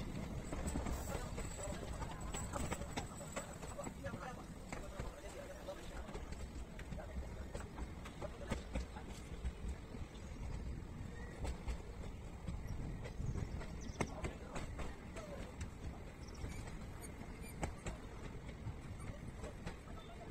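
Passenger train coach running on the rails, heard from its open doorway: a steady low rumble with irregular sharp clacks of the wheels over rail joints.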